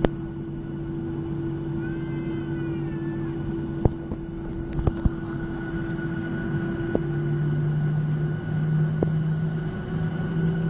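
Airliner cabin noise while taxiing after landing: a steady engine drone with two low hums. About seven seconds in, one hum drops away and the other rises slightly and gets a little louder. A few sharp clicks can be heard.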